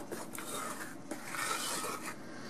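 A spoon stirring and folding thick brownie batter in a stainless steel saucepan, scraping and rubbing against the pan in repeated strokes.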